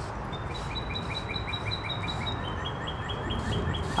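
A songbird singing a fast series of repeated chirps, about six a second, which shifts to a slightly lower note about halfway through, over a steady background hiss. Soft hissing squirts from a trigger spray bottle come now and then.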